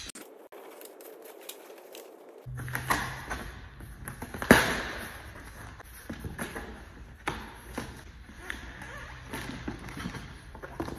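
A cardboard shipping carton being opened by hand: flaps rustling and scraping, a heavy inner box sliding against the cardboard, and scattered knocks, the loudest a sharp knock about four and a half seconds in.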